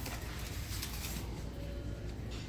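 Steady store background noise: a continuous low hum with a faint even hiss and no distinct events.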